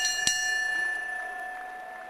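Boxing ring bell struck in a rapid series, with the last stroke a quarter second in. Its ringing tone then fades away over the next second and a half.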